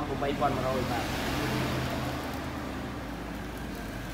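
A motor vehicle passing by: a smooth rush that swells and fades over about two seconds, over a low engine hum.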